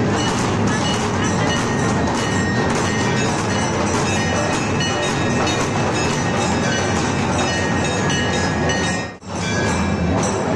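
Loud, dense festival din of a packed crowd with drums beating, with a brief sharp drop near the end.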